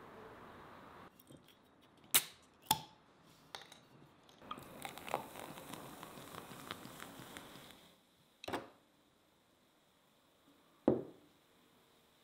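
A crown cap pried off a glass bottle with a bottle opener: a few small clicks, then two sharp cracks as the cap pops off. Then a fizzy drink is poured into a clay cup, hissing and crackling for about three seconds, followed by two single knocks as things are set down on a wooden table.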